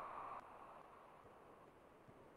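Near silence on a video call, with a faint hiss that drops away about half a second in.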